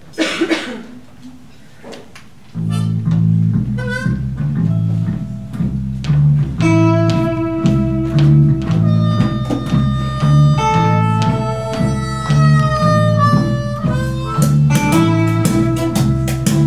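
After a short loud burst near the start, a string band starts a tune about two and a half seconds in: upright bass and guitars set a steady, bouncing rhythm. From about six seconds a harmonica comes in over it with long held melody notes.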